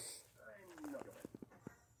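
Sped-up cartoon dialogue played from a TV, the voices quick, high-pitched and unintelligible, followed by a few short clicks a little past the middle.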